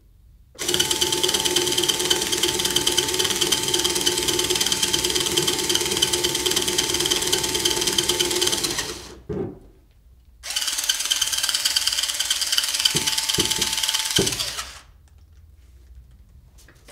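Cordless drill running at a steady speed with a banana spinning on its bit, in two long runs: about eight seconds, a short pause with a knock, then about four more seconds.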